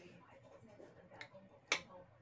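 A metal spoon clinks against a ceramic plate while eating: a light tick a little after a second in, then one sharp, louder clink near the end.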